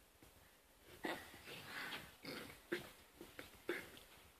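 A toddler making a run of short, faint vocal sounds, starting about a second in.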